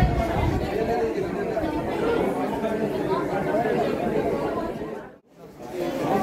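Chatter of many boys' voices talking over one another, no single voice standing out. It cuts off suddenly about five seconds in, then voices return.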